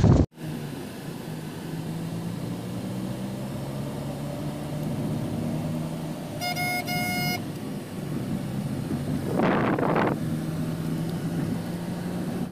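Steady engine and road noise heard from inside a moving car. About six and a half seconds in, a car horn gives two short toots close together, and a brief rush of noise passes about nine and a half seconds in.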